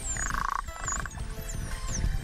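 Bottlenose dolphins whistling underwater: many high-pitched whistles sliding up and down, with two short buzzing pulsed calls in the first second, over background music.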